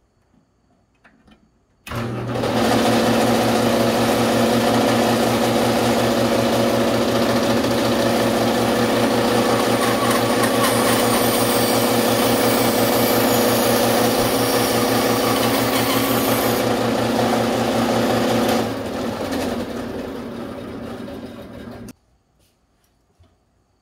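A benchtop power saw switched on about two seconds in, running steadily as a cedar ring blank is fed through its blade. Near the end it is switched off and winds down over about three seconds before going silent.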